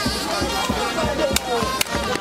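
Chanpwèl band music: drums beating a fast steady rhythm with voices chanting over it, and two sharp cracks in the second half.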